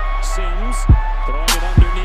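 Background music with a heavy, deep bass kick beat and sharp snare claps, with a voice riding over the beat, in the style of hip hop.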